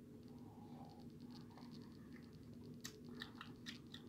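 Faint drinking and mouth sounds as a person sips and swallows an energy drink from a glass, with a few small clicks near the end, over a low steady room hum.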